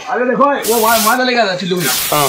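A man talking, broken by two sharp half-second hisses, one in the middle and one near the end.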